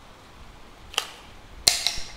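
Handling clicks from an NFT telescopic ISO fishing rod: one sharp click about a second in, then a louder quick clatter of several clicks with a slight metallic ring near the end, as the stacked line guides and rod sections knock together in the hand.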